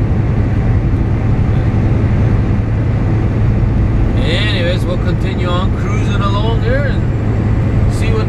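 Inside the cab of a Volvo 780 semi truck at highway speed: the Cummins ISX diesel engine's steady low drone together with road noise.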